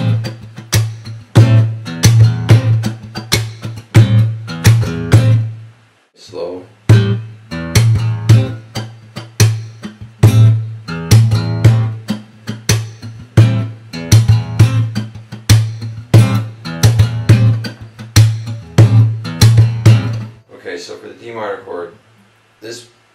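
Steel-string acoustic guitar played in a percussive hip-hop fingerstyle groove on an A minor chord: open A bass notes and a two-string chord at the fifth fret, mixed with bass-drum hits, slaps and muted-string strokes in a repeating rhythm. The playing stops briefly about six seconds in, starts again, and stops a second or two before the end.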